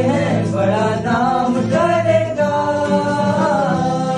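Several voices singing a Hindi film song together to strummed acoustic guitars, holding long drawn-out notes over the chords.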